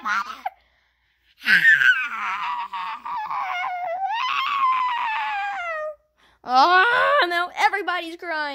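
A child's wordless, play-acted wailing for a toy character: one long, wavering, high-pitched wail that trails off downward, then a shorter burst of high voice near the end.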